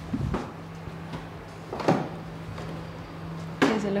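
A door unlocked with a key and pushed open, with a clunk at the start and a couple of knocks after it, over a steady low hum.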